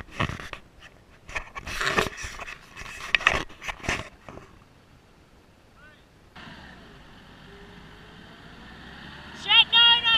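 Voices and scuffling in the first few seconds. Then a car's engine runs and revs slowly higher, with the car stuck in soft sand. A short loud cry comes just before the end.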